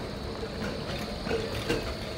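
Electric street tram rolling past on its rails: a steady low rumble with a faint high whine over the general noise of a city street.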